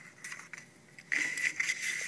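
Tabletop handling noise: quiet at first, then about a second in a soft rubbing, sliding sound that lasts about a second.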